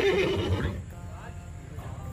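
A horse whinnying: a quavering, wavering call that fades out within the first second.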